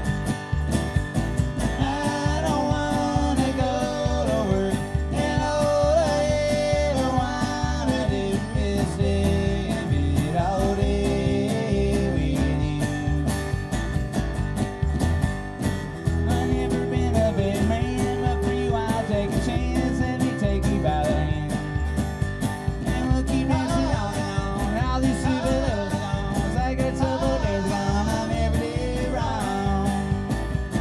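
Live acoustic folk music, an instrumental passage: strummed acoustic guitar and upright double bass over a steady kick-drum beat, with a wavering melody line above.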